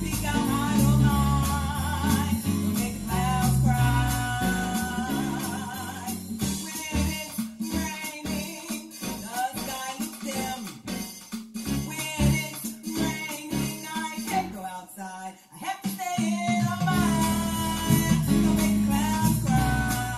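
A children's song plays: a singing voice over instrumental backing with a steady beat. In the middle the bass drops out and the music thins for several seconds, then the full backing comes back.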